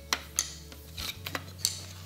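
Shock-corded aluminium chair-frame poles clicking and knocking against each other as they are folded into a bundle: about five light clicks spread over two seconds.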